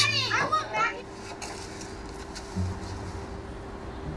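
A child's voice calls out 'spaghetti' about the first second. After that only a quiet background remains: a steady low hum with a brief soft low note.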